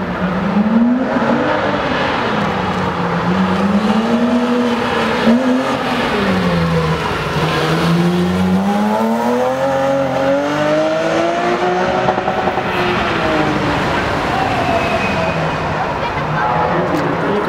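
BMW M3 race car's engine on a slalom run, revving up and falling back again and again as the car accelerates and brakes between the cones, its pitch rising and dropping every couple of seconds.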